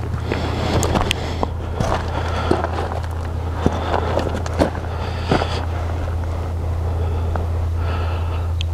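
Footsteps crunching on loose gravel, with scattered small clicks, over a steady low hum.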